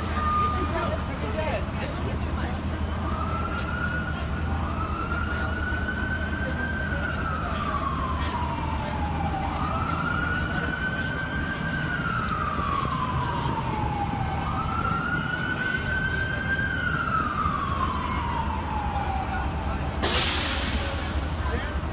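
An emergency vehicle siren wailing over steady city traffic rumble. Three slow cycles: each rises quickly, holds high, then slides slowly down, starting a few seconds in.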